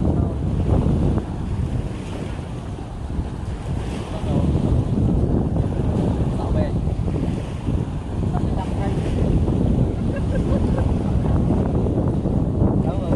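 Strong wind buffeting the microphone: a heavy, gusting rumble that swells and eases every second or two.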